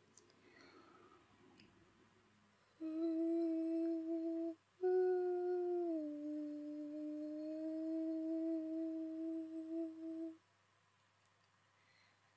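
A woman humming two long, steady held notes with a short break between them; the second note steps down slightly in pitch partway through.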